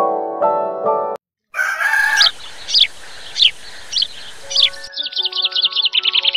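Keyboard music stops about a second in. After a brief silence a rooster crows once, and a bird gives short falling chirps about every half second. Near the end a fast run of high chirping trills comes in over sustained music notes.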